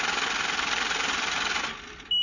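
Banknote counting machine riffling rapidly through a stack of bills, a steady dense whirr that fades out near the end.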